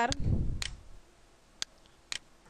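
A few isolated sharp computer mouse clicks, spaced about a second apart. A brief low rumble sits just after the start and is louder than the clicks.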